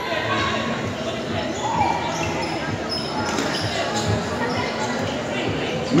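Futsal match play in a large indoor hall: scattered ball kicks and bounces and players' shoes on the hard court, with brief high squeaks and distant voices, all echoing.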